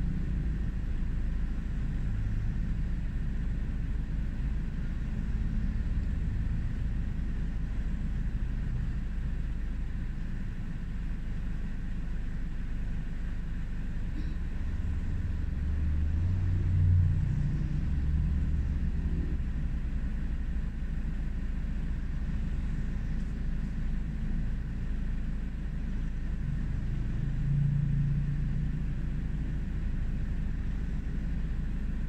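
Road traffic passing close by: a steady low rumble of engines and tyres, swelling as a vehicle goes past about halfway through and again near the end.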